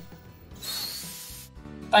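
Steam hissing from an auxiliary boiler's safety valve lifted by its manual easing gear, a burst of about a second, over faint background music.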